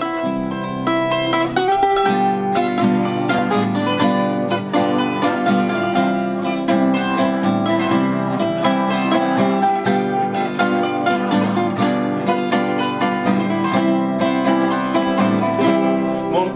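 Viola caipira and acoustic guitar playing an instrumental passage together: quick runs of plucked notes on the viola over strummed guitar chords.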